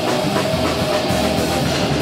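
A death metal band playing live: heavily distorted electric guitars over drums, a loud, dense, unbroken wall of sound.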